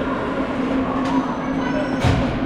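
Indoor ice rink ambience: a steady low hum under the scraping of hockey skates on the ice.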